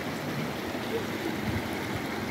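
Steady rushing of flowing water.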